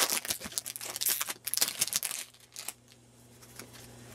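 Foil Pokémon card booster pack wrapper crinkling and tearing as it is opened by hand: a rapid run of crackles for about the first two seconds, then it goes quiet.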